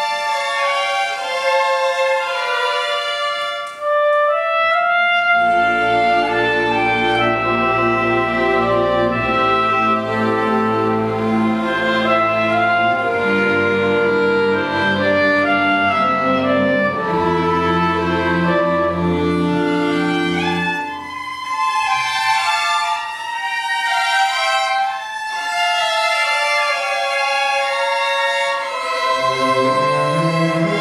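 A string ensemble of violins, cellos and double bass playing a slow bowed piece. The high strings play alone at first, then the low strings come in underneath with long held notes about five seconds in and drop out around twenty seconds in, returning near the end.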